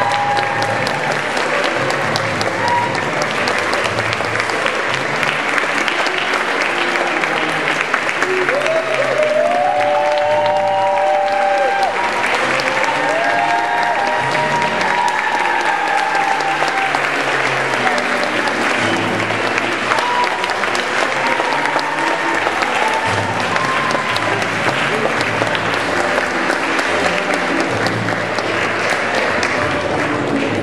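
Audience applauding steadily, with music playing underneath; a melody stands out about a third of the way in.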